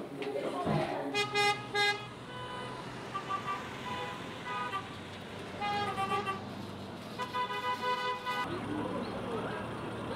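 Street traffic with vehicle horns hooting repeatedly, short toots and longer blasts at several different pitches, over a steady traffic hum. Voices are heard near the end.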